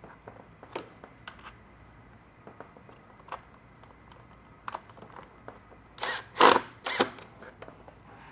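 Small clicks and taps of a screw being threaded by hand through the speaker bracket into a speaker adapter, with parts being handled. About six to seven seconds in come two or three short, louder scraping rustles.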